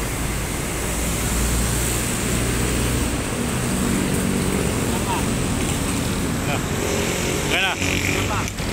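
Steady road traffic noise from passing vehicles, with an engine hum that sits low for the first few seconds and higher in the middle.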